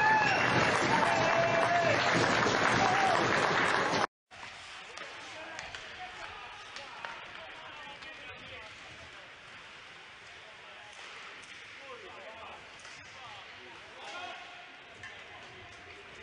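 Ice hockey arena sound from a game broadcast: loud crowd noise with shouting voices for about four seconds, then an abrupt cut to a much quieter arena murmur with a few sharp clicks of sticks and puck on the ice.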